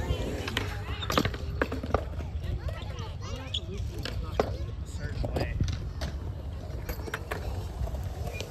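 Skateboard wheels rolling on concrete, with sharp clacks of skateboards hitting the ground several times and voices in the background.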